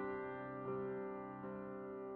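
Slow, soft solo piano music: a held chord slowly dies away, with two quieter notes coming in partway through.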